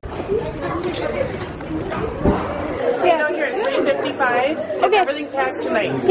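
Indistinct chatter of a few people talking, with no clear words. A low background rumble under the voices drops away suddenly about three seconds in, leaving the voices on their own.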